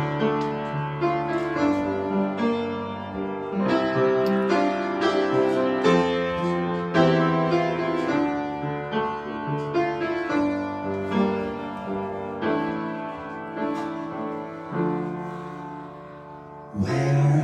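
Solo piano playing a chordal introduction to a song, a new chord or note group struck every second or so, growing softer over the last few seconds.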